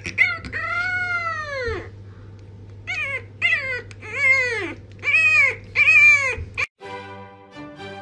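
French bulldog puppy howling: one long howl that rises and falls in pitch, then a run of about five shorter howls. Near the end the howls give way to background music.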